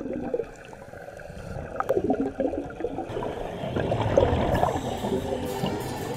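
Muffled underwater bubbling and gurgling of scuba divers' exhaled regulator bubbles, heard through a camera's waterproof housing. It grows louder about two seconds in.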